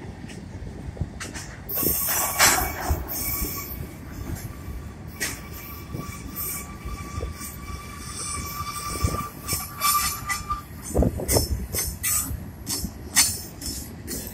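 Freight cars of a long manifest train rolling past on a curve. The wheel flanges squeal in a thin steady high tone from about two seconds in until about ten and a half seconds, with a louder screech early on. Underneath is a steady low rumble and sharp clicks and clanks from the wheels on the rails.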